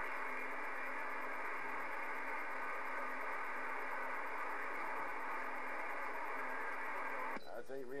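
Steady hiss and static from a Galaxy radio's speaker, the sound of a weak received signal. It cuts off sharply near the end as a clear voice comes through.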